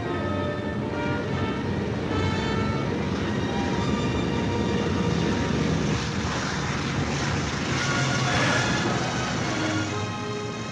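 Orchestral film score over the steady drone of a B-17 Flying Fortress's four radial engines as the bomber comes in low over the runway.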